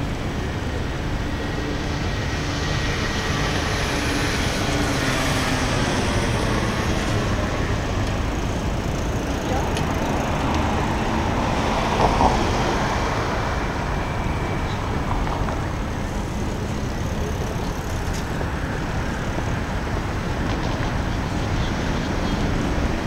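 Steady road-traffic noise from passing cars and trucks, a continuous low rumble, with a brief louder swell about twelve seconds in.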